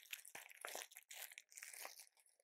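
Faint, irregular crinkling of plastic-wrapped wig cap packs being handled and sorted.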